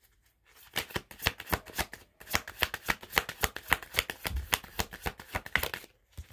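A deck of tarot cards being shuffled by hand: a quick run of card clicks and flicks, with a brief pause about two seconds in.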